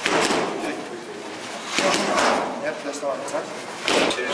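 Punches landing on focus mitts: a few sharp smacks, near the start, about two seconds in and near the end, in a large room.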